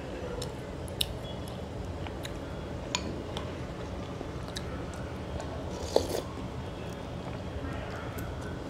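Close-miked eating sounds: mouth sounds of eating spoonfuls of chicken manchow soup, with scattered sharp clicks of a spoon against a glass bowl. The loudest click comes about six seconds in.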